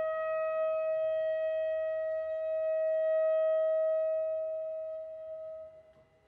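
Saxophone holding one long, steady note that fades away near the end.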